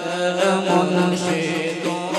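A group of men singing a devotional song through microphones, holding long notes that waver in pitch.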